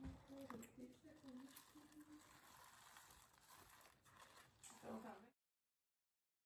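Very faint low voice murmuring in short broken snatches, over soft rustling of a cloth filter bag of herb-infused oil being lifted and squeezed. The sound cuts off suddenly about five seconds in.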